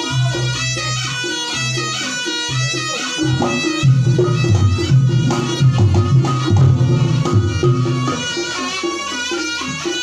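Live Reog Ponorogo gamelan playing: a kendang drum rhythm and gong-chime strokes under a reedy, nasal wind melody typical of the slompret shawm.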